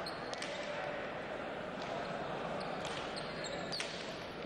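Hand pelota rally: the hard leather ball smacking off the frontón wall and players' bare hands, several short sharp impacts ringing in the hall over a steady murmur of the crowd.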